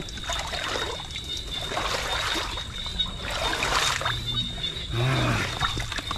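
Water trickling and splashing off a wet mesh fish trap as it is handled over swamp water, in several short bursts. A thin steady high tone runs underneath.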